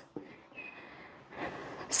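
A woman's short, breathy rush of air about a second and a half in, just before she speaks again. There is a faint click near the start and a brief faint high squeak around half a second in.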